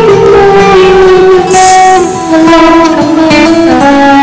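A woman singing long held notes close into a BM-800 condenser microphone through a V8 sound card with echo added, over a music backing track.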